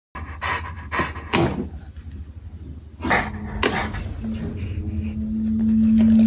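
A large dog panting and snuffling close to the microphone in short breathy puffs. From about four seconds in, a steady low humming tone rises in level.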